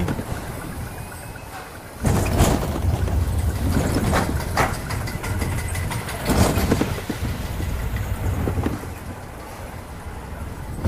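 Ride noise from a spinning wild-mouse coaster car running along its steel track: a steady rumble and rattle with wind on the microphone. It gets louder about two seconds in, with a few sharp clatters.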